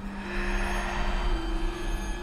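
A low, steady rumbling drone with a held, hum-like tone over it.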